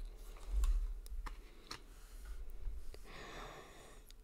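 Tarot cards being handled: a few soft clicks and taps as a card is drawn and laid on the table, with a brief sliding swish about three seconds in as it is put in place.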